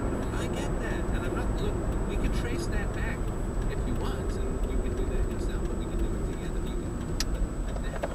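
Road and tyre noise with engine rumble heard inside a moving car's cabin, with a thin steady high whine above it.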